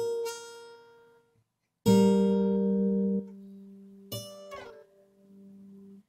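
Acoustic guitar played slowly by fingerpicking: three separate plucked notes or two-note chords, each left to ring and fade. The loudest comes about two seconds in.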